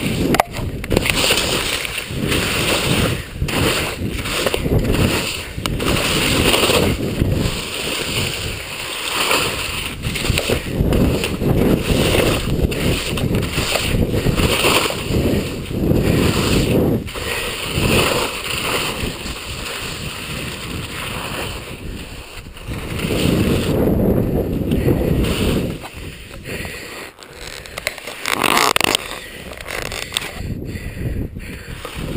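Telemark skis scraping and hissing over snow through a run of turns, the noise swelling and easing with each turn.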